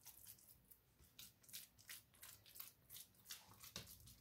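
Faint, irregular light pats and rustles of hands pressing and smoothing a soft, non-sticky walnut dough into a round metal baking pan.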